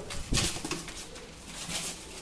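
Fancy pigeons cooing, with a run of short scratchy noises that are loudest about half a second in.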